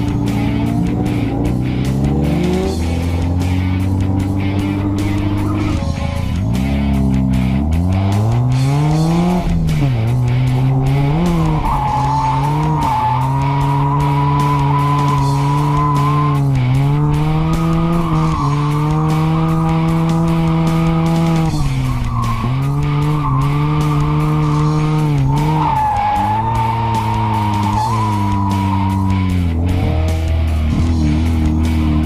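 Mazda RX-7's rotary engine revving up and falling back again and again as the car is drifted, with tires squealing in two long stretches, in the middle and near the end. Background music with a steady beat is mixed underneath.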